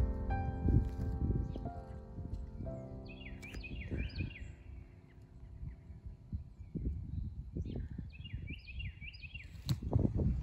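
Soft background music with held notes fades out over the first three seconds. A songbird then sings two phrases of four or five downward-slurred whistles, a few seconds apart, over footsteps and rustling in grass.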